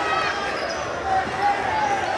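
A basketball bouncing on a hardwood gym floor, with several short high squeaks of sneakers from players running on the court, over the chatter of spectators.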